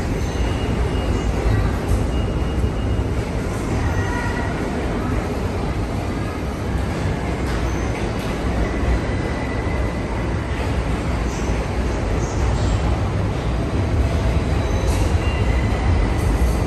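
Subway train running in the station: a steady, loud low rumble, with a few brief, faint high squeals from the wheels.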